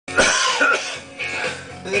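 Background rock music with a loud, harsh cough in the first second. A man's voice starts right at the end.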